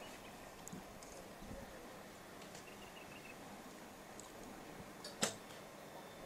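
Quiet outdoor range ambience with a brief faint chirping in the middle, then a single sharp snap about five seconds in: an archer's recurve bow being shot.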